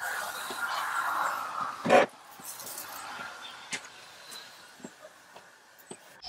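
Hand pump-up sprayer misting pre-wash onto a car's paintwork: a steady hiss for about two seconds, then a brief louder burst, followed by fainter spraying with a few light clicks.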